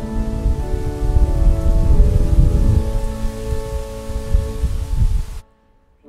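Organ playing the hymn's introduction in held, slowly changing chords over a loud, ragged low rumble; both cut off abruptly about five and a half seconds in.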